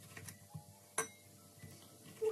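Kitchen knife cutting a tomato into cubes on a wooden cutting board: a few faint, irregular taps of the blade on the wood, the loudest about a second in.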